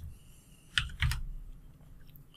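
Two computer keyboard keystrokes about a third of a second apart, typing a number into a settings field.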